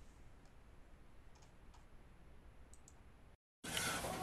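Near silence: faint room tone with a few soft, short clicks, then a moment of dead silence near the end before a louder room hum comes in.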